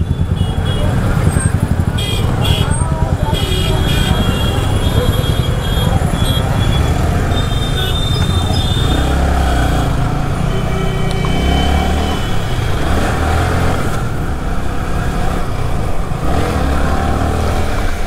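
Yamaha R15 V3 motorcycle's single-cylinder engine running in slow traffic, then pulling away and up through the gears on an open road, with wind rumbling over the rider's microphone.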